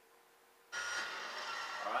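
A steady hiss with faint steady tones in it starts suddenly under a second in and holds for about a second and a half, as loud as the speech around it. A man says "alright" over its end.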